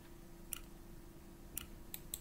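Three faint computer mouse clicks over a faint steady hum.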